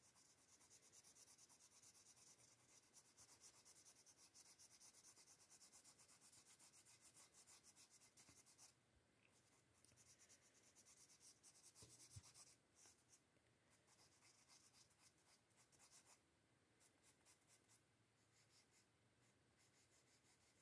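Faint, rapid back-and-forth scratching of an orange crayon shading on paper. It stops briefly about nine seconds in, then comes in shorter, sparser runs.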